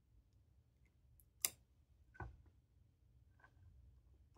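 Faint clicks and taps of hard plastic as ink is put back into a small plastic vial: a sharp click about one and a half seconds in, a duller knock just after two seconds, and a faint tick near the end.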